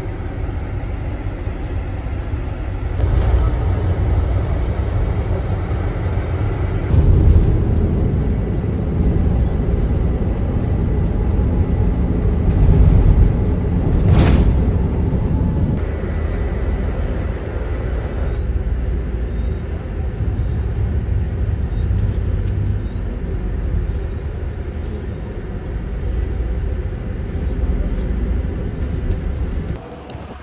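Engine and road noise inside a moving coach bus: a steady low rumble that swells and eases, with one sharp click about fourteen seconds in.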